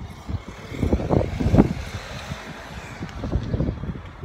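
Wind buffeting a phone's microphone during a bicycle ride: irregular low rumbling gusts, loudest about a second and a half in.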